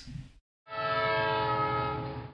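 A loud held chord of several steady tones, horn-like, starts abruptly about two-thirds of a second in after a brief silence and holds without change.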